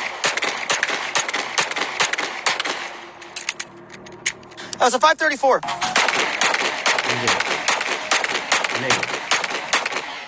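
Rapid pistol fire from an S&W M&P 2.0 Compact, shots about three a second, with a break in the shooting a little before the middle and a brief gliding sound about five seconds in. Background music runs underneath.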